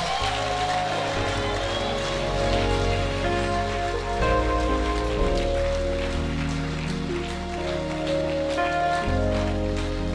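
Church band music of sustained held chords that shift to new ones every few seconds, over a steady patter of a congregation clapping.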